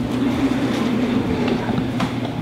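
Steady indoor background noise with a low, even hum.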